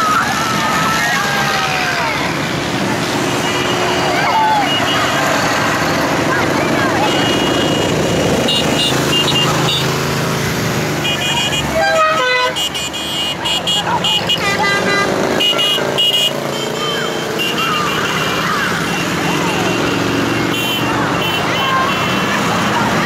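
Motorcycles and trikes passing slowly, engines running low, with short high horn toots repeated again and again from about three seconds in and a louder, lower stepped horn call around twelve seconds in.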